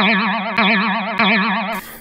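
Comedic cartoon-style sound effect: a single held tone wobbling rapidly and evenly in pitch, which cuts off abruptly near the end.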